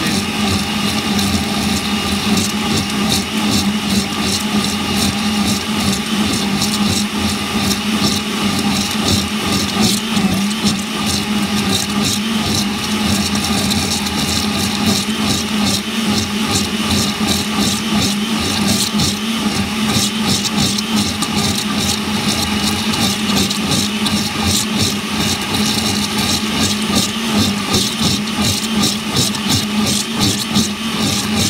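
Vintage Vitamix 3600/4000 blender running steadily on high speed, liquefying a thick fruit, kale and ice smoothie in its stainless steel container as the mixture churns in a vortex over the blades.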